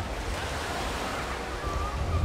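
Wind rumbling on the microphone over a steady outdoor hiss, with faint distant voices near the end.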